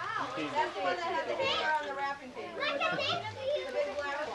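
Several children's and adults' voices talking over one another: indistinct family chatter with high-pitched children's voices.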